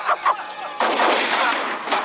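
Gunfire from an action film's gunfight scene: a dense, rapid run of shots.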